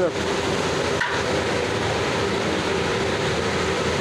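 Steady sizzle of browned onions and red spice masala frying in hot oil in a large aluminium cooking pot, with a single knock about a second in.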